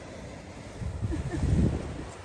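Wind buffeting the microphone, a low rumble that swells about a second in and fades near the end, over a steady wash of surf.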